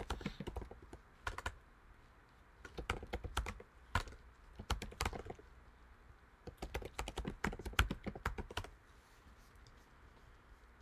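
Typing on a computer keyboard: quick runs of keystrokes in several short bursts with pauses between them.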